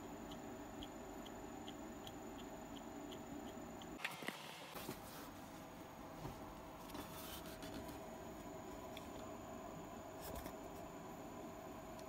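Faint handling noises of a turbocharger being turned over in the hands, with a few light clicks, over a quiet room hiss. A faint regular tick, about two and a half per second, runs through the first few seconds.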